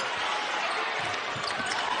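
A basketball bouncing on a hardwood court during live play, under a steady background of arena crowd noise.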